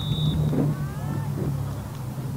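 Outdoor soccer-field sound: a steady low wind rumble on the microphone, with distant shouts from players and spectators. A long referee's whistle blast cuts off just after the start.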